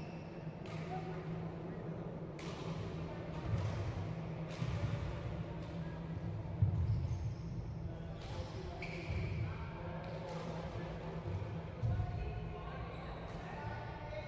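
Badminton rally on a wooden hall court: a string of sharp racket strikes on the shuttlecock, about one every second or so, with heavier thuds of footfalls, the loudest about seven and twelve seconds in. Under it run faint voices and a steady low hum in the reverberant hall.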